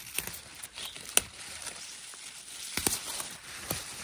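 Wild garlic (ramsons) leaves rustling and stems snapping as they are picked by hand at ground level: a faint rustle with several sharp snaps, the loudest a little over a second in.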